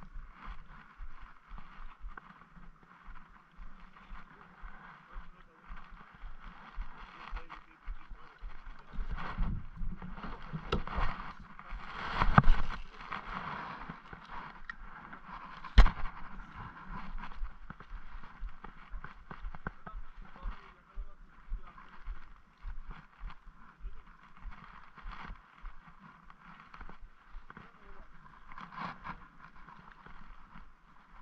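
Spinning reel being wound in with many small irregular ticks, with handling bumps and one sharp click about sixteen seconds in.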